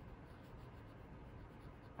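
Faint, steady scratching of a cotton swab pushing ground spice across a wooden cutting board.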